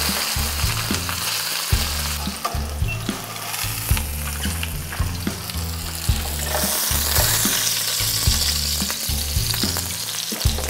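Maitake (hen-of-the-woods) mushroom clusters frying in oil in a nonstick sauté pan, a steady sizzle, with a few light knocks from a slotted spatula and from a heavy steel pot set down on the mushrooms to press them flat.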